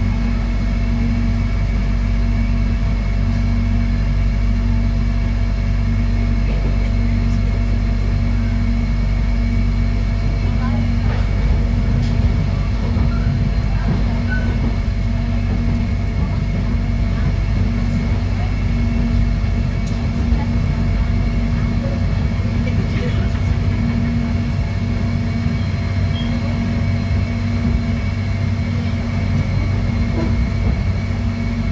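Cabin running noise of an electric airport train in motion: a steady low rumble with several constant hums.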